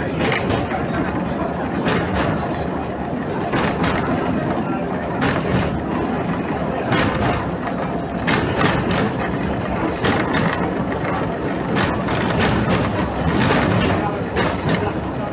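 Historic Konstal N-type tram running along the rails, heard from inside the car: a steady low rumble with frequent sharp clacks and rattles.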